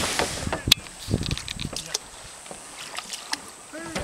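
A few sharp clicks and light knocks from a plastic kayak being handled at the water's edge, with a voice briefly near the end.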